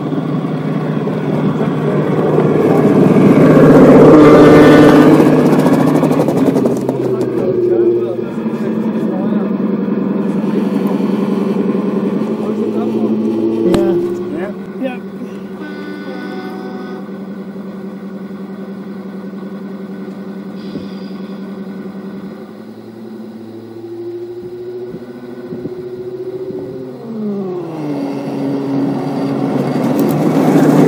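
Gauge 1 model locomotives running on a garden railway. First a small tank engine passes close by, its running sound loudest about four seconds in. Then a model diesel locomotive hauling coaches approaches with a steady engine note of several held tones, which drops in pitch near the end.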